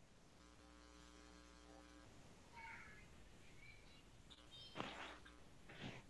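Near silence: faint room tone on a video call, with a brief steady hum in the first two seconds and two soft, short noises near the end.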